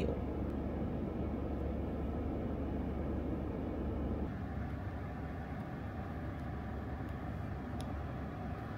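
Steady low hum inside a parked car's cabin, dropping slightly about four seconds in.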